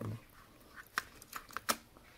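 A handful of small, sharp metal clicks from handling a steel-bracelet quartz wristwatch as its battery is seated and the watch is turned over. The loudest comes about a second in and another near the end.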